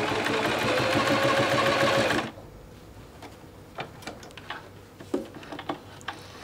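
bernette London 5 sewing machine running a test line of straight stitch on a spare scrap of fabric, the motor and needle going steadily and picking up speed a little, then stopping about two seconds in. A few light clicks and fabric-handling noises follow.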